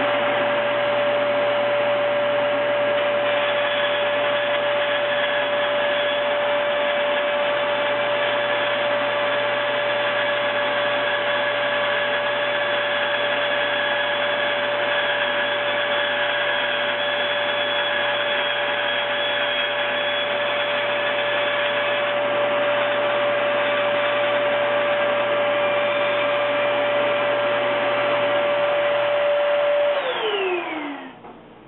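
Bandsaw running steadily with a constant whine while its blade cuts corner notches out of 22-gauge sheet metal. Right at the end the saw is switched off and the whine starts to fall in pitch as it spins down.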